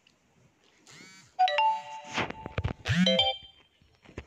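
An electronic phone ringtone: a short chime of a few held notes starting suddenly, broken by a cluster of sharp clicks, then a second burst of notes, with a brief laugh at the end.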